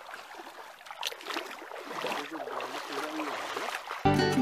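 Water sloshing and splashing as someone wades barefoot through a shallow river, with a steady rush of flowing water under it.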